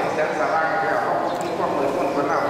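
A man speaking in Thai into a handheld microphone: a Buddhist monk giving a sermon, talking continuously.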